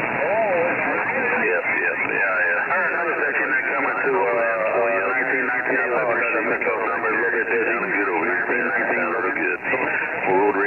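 Speech coming over a CB radio receiver, thin and narrow-sounding, with static behind it and hard to make out.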